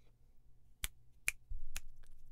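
Finger snaps, three sharp single snaps about half a second apart, made into a microphone as an input-level check.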